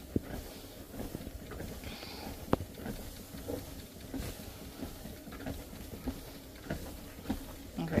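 Airhot treadmill running at a slow walking speed: a faint low hum of motor and belt under soft footfalls, with a couple of light clicks, one just after the start and one about two and a half seconds in.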